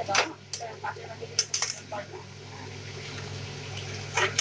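A metal spatula clinking and scraping against an aluminium kadai while stirring pumpkin pieces, a run of sharp clinks in the first two seconds, then quieter over a steady low hum.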